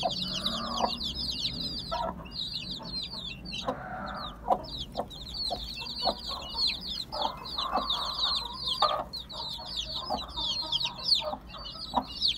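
A brood of ten-day-old Aseel chicks peeping constantly, many high falling cheeps overlapping, while the hen gives lower clucks now and then. A few sharp taps stand out among them.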